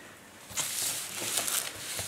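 Plastic wrap and cardboard rustling as hands handle a wrapped planner in its shipping box, starting about half a second in.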